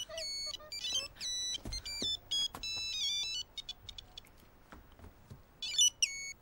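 Old mobile phone ringing with a monophonic ringtone: a beeping melody of stepped notes for about three and a half seconds, a short gap, then the melody starting again near the end. It is an incoming call.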